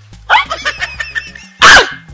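A dog barks twice, once about a third of a second in and again, louder, near the end, over background music.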